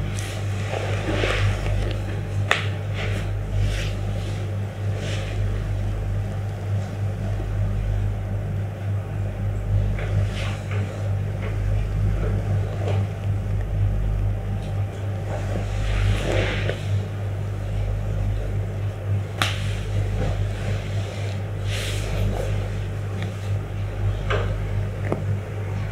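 Scattered soft rustles, taps and slaps of hands and loose cotton clothing against the body and the mat as a leg is lifted and stretched in a Thai massage, over a steady low hum.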